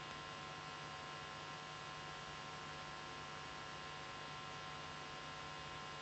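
Steady electrical hum and hiss with several faint steady high tones, unchanging throughout: line noise in the audio feed, with no sound of the stamping heard.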